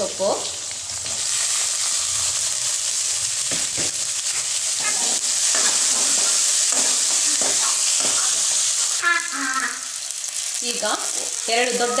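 Garlic and curry leaves sizzling loudly in hot oil in an aluminium kadai, the sizzle swelling about a second in as they go into the pan, with a metal ladle stirring and scraping against the pan.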